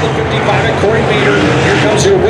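A track announcer talking over the loudspeakers, with the steady drone of dirt-track modified race-car engines underneath.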